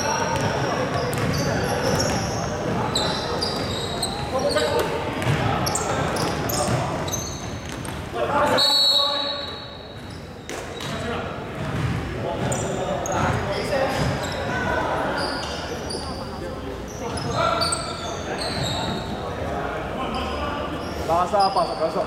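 Indoor basketball game in a large echoing hall: a ball bouncing on the hardwood court, sneakers squeaking, and players' voices. About nine seconds in, a high steady whistle blast, typical of a referee stopping play, is followed by quieter play.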